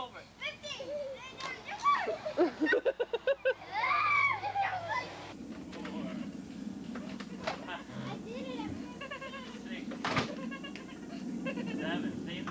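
Young children's voices calling and squealing during play, with one long rising-and-falling squeal about four seconds in. After about five seconds the voices give way to a steady low rumbling noise with a few sharp knocks and faint voices.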